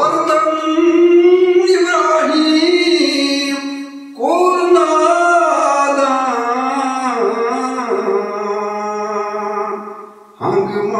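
A man singing a Kashmiri Sufi manqabat solo, in two long phrases of held, wavering notes with a brief break about four seconds in.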